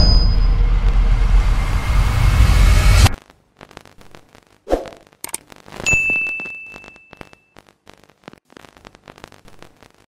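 Sound effects for an animated logo outro: a loud whoosh with heavy bass, growing brighter until it cuts off suddenly about three seconds in. Then come scattered glitchy clicks, a short thump, and a notification-bell ding about six seconds in that rings out for over a second.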